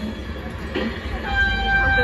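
Small amusement-park ride train running with a steady low rumble. About one and a half seconds in, a steady pitched horn tone from the train sets in and holds.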